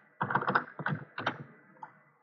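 Computer keyboard being typed on: a quick, irregular run of several keystrokes.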